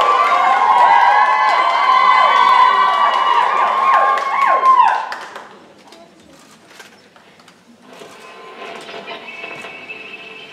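Audience cheering and screaming with many high voices, which dies away about five seconds in. A quieter hall follows, with scattered light clicks.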